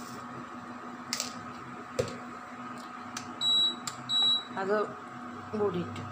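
Induction cooktop's control panel beeping twice, two short high beeps under a second apart, as its buttons are pressed to switch it on.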